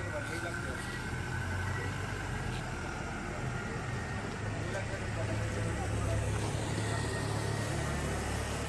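A car engine running with a steady low hum as an SUV drives off along the street, the hum swelling slightly in the second half.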